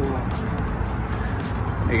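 Steady outdoor background rumble and hiss, with no distinct events.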